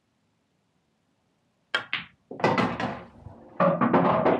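An English pool shot played with screw (backspin): a sharp click of cue tip on cue ball nearly two seconds in, a second quick click just after, then louder knocking and clattering of balls on the table over the last two seconds.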